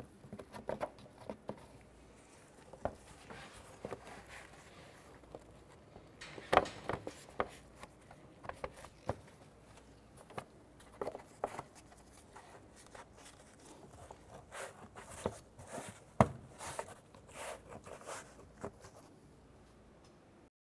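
A hard plastic engine cover and its oil fill cap being handled and fitted back on: scattered clicks, knocks and scraping, with the two sharpest clicks about six and sixteen seconds in.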